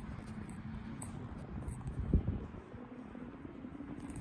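Low, steady wind rumble on a handheld phone microphone, with a single thump about two seconds in.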